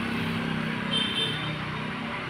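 A motor vehicle engine running steadily, with a brief high chirp about a second in.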